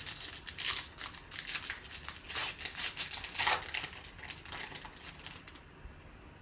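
Foil wrapper of a Panini Certified football card pack crinkling and tearing as it is ripped open by hand, in irregular crackling bursts that stop about half a second before the end.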